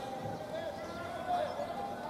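Indistinct, distant voices and calls from the ballpark crowd, with no words that can be made out.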